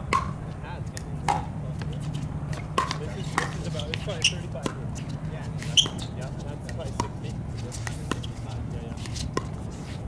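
Pickleball paddles hitting a plastic pickleball during a doubles rally: sharp pops at irregular intervals of about a second, the loudest about six seconds in. A steady low hum runs underneath.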